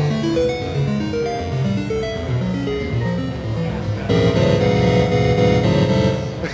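Eurorack divide-down organ tones from a Kanawha Long Division Tone Module playing a fast sequence of short single notes. About four seconds in, a louder chord of many notes sounds at once.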